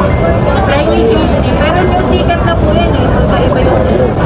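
Voices talking over a steady low rumble of airport terminal background noise.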